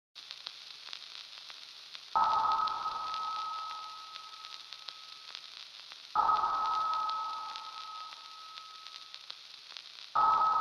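Intro sound effects: a steady crackling static hiss with scattered clicks, broken by a sudden ringing hit about two seconds in and another about six seconds in, each tone fading away over a few seconds.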